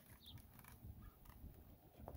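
Near silence, with a few faint soft clicks.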